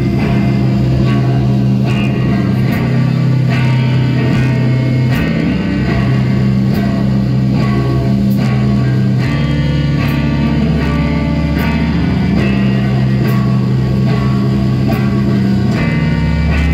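Live rock band playing an instrumental passage: electric guitar over bass guitar and drum kit, with cymbal hits at a regular pulse. The bass line drops to lower notes about nine seconds in.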